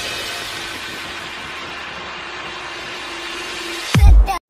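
A steady rushing noise with a faint held tone underneath, easing off slightly after the start, from the sound effect of an animated subscribe-button end screen.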